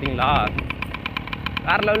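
Small 50cc engine of a motorised bicycle running steadily under way, a low, evenly pulsing rumble, with short bits of a man's voice over it near the start and near the end.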